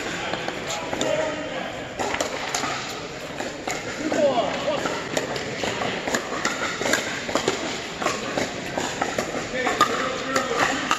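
Pickleball paddles hitting a plastic pickleball, sharp pops at irregular intervals through a rally, with more hits from neighbouring courts. The pops echo in a large indoor hall over the chatter of players' voices.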